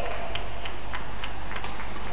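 Fast badminton rally: rackets strike the shuttlecock in a quick series of sharp clicks, about six in two seconds, over steady arena background noise.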